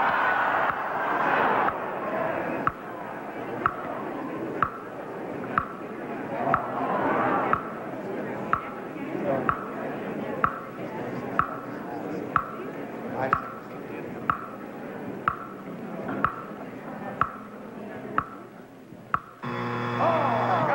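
A game-show stage clock ticking about once a second, timing a 40-second stunt, over voices from the studio audience. Near the end a buzzer sounds: time has run out and the stunt is lost.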